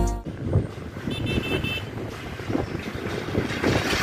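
Irregular clattering and rattling of a suspension footbridge's steel grated deck under traffic, with wind on the microphone. About a second in comes a short run of four or five high chirping beeps.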